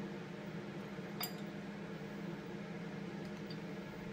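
A steady machine hum, with a single light metallic click about a second in and a couple of faint ticks near the end, from small carburetor parts being handled on a bench.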